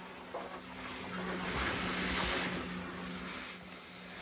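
Hydrovac vacuum hose sucking soil and water out of an excavation: a rushing of air that swells through the middle and then eases, over a steady low hum.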